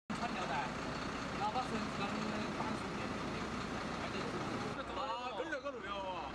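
Outdoor voices talking over the steady hum of a running vehicle engine. Near the five-second mark the sound cuts abruptly to clearer, closer voices.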